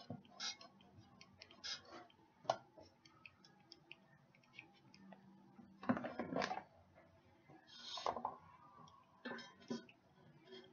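Light clicks, taps and rustles of kitchen items being handled, with a sharp tap about two and a half seconds in and louder clattering about six and eight seconds in.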